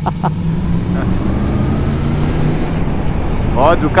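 Motorcycle engine running under way with steady wind and road noise, its note rising gently through the middle as the bike picks up speed.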